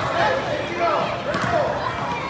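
High voices calling out on a gym basketball court, with a basketball bouncing on the hardwood floor about a second in.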